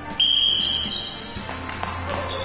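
One sharp blast on a sports whistle: a shrill steady tone that starts suddenly just after the start and lasts about a second, signalling the start of play in a gym-class ball game. Music plays underneath.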